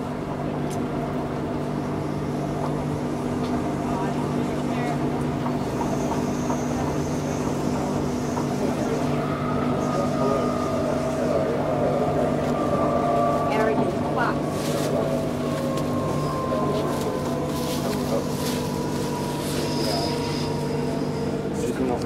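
Steady hum and running rumble inside a moving electric suburban train carriage, with a faint whine that drifts slowly down in pitch over the second half.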